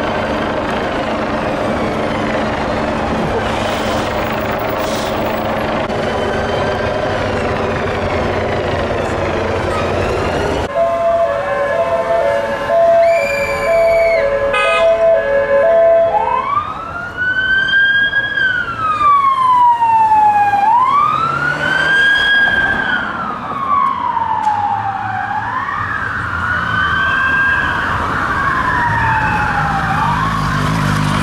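A large vehicle's engine running steadily in traffic, then about ten seconds in an emergency vehicle siren starts on a two-note hi-lo. A few seconds later it changes to a wail that rises and falls about every two seconds, quickening near the end.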